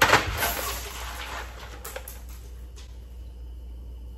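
A short, loud burst of rustling handling noise right at the start that dies away over about a second and a half, then two or three light clicks, over a low steady hum.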